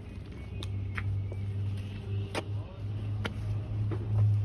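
A steady low machine hum, with about four sharp taps and scrapes of a metal scoop against the cement-covered jali mould as dry cement powder is sprinkled and spread over the wet cement.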